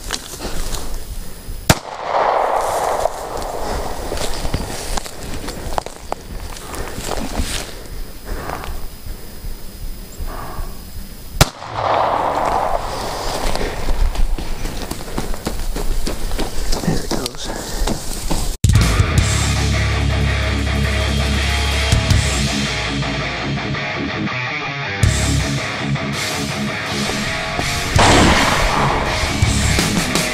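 Two handgun shots about nine seconds apart, finishing a wounded wild boar. About two-thirds of the way in, loud heavy rock music takes over.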